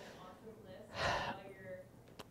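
Faint off-microphone speech, with a short breath close to the microphone about a second in.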